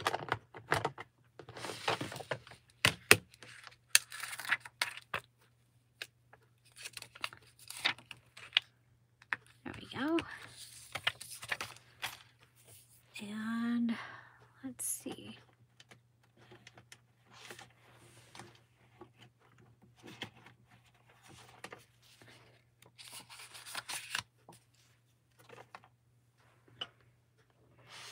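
Clear stamp and plastic packaging being handled: a clear stamp peeled from its plastic backing sheet and pressed onto an acrylic block. Plastic crinkles and rustles, with sharp clicks and taps as the block and packets are set down on the cutting mat.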